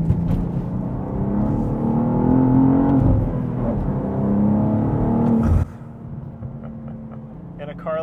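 BMW M2's twin-turbo inline-six accelerating hard, heard from inside the cabin: the revs climb, drop at an upshift about three seconds in, then climb again. About five and a half seconds in, the throttle is lifted and the sound falls suddenly to a steady cabin drone.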